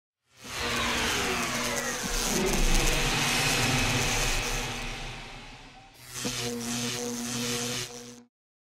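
Engine sound effect for a logo intro: an engine passing by, its pitch falling as it fades over about five seconds. A second steady engine hum then starts abruptly about six seconds in and stops suddenly at the end.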